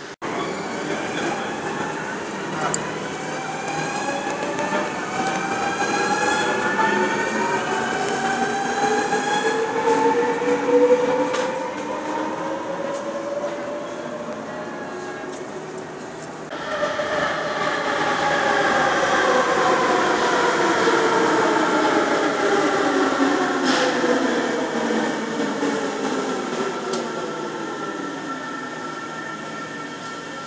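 Electric train traction motors whining in an underground station, several tones climbing steadily in pitch as an NS yellow double-decker train pulls away. Then, after a break, another electric train's motor whine falls steadily in pitch as it slows along the platform.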